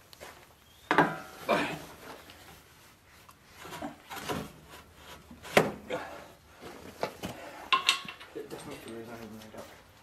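Steel brush guard knocking and clanking against the John Deere 2038R compact tractor's front frame as it is fitted into place: a series of separate knocks, one of them with a short metallic ring near the end.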